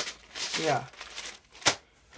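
Loose plastic Lego pieces clicking and clattering against each other inside a zip-lock bag as it is handled, with one sharp click about three quarters of the way through.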